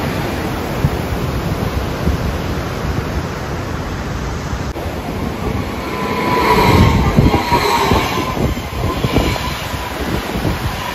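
Rushing water of the Rhine rapids, then, from about halfway through, an SBB electric passenger train passing close by on the bridge: a rising high whine from its wheels and drive with some wheel clatter, loudest at about seven seconds, over the noise of the river.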